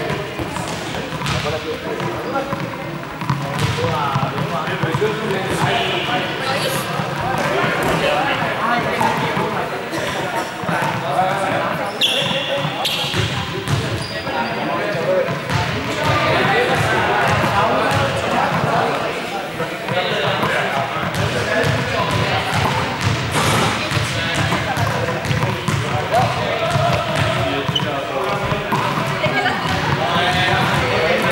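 Balls bouncing on a sports-hall floor, the thuds echoing in the large hall, under the chatter of a group of people talking.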